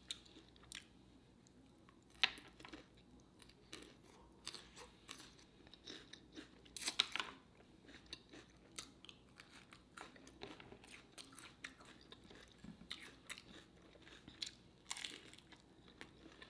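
Chewing and crunching of crisp fried lumpia (Filipino egg rolls) and raw bean sprouts: faint, irregular crackles with a few louder crunches, about two seconds in, around seven seconds, and near the end.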